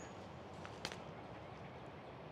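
Faint outdoor background noise with a single short click a little under a second in.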